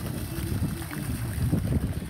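Wind buffeting the microphone outdoors: an irregular low rumble in gusts, dropping away just after the end.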